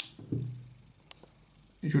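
Faint handling clicks as a 608 ball bearing is pressed into a 3D-printed plastic extruder body: a sharp click at the start and a fainter one about a second in. A short hum of a man's voice follows the first click, and speech begins near the end.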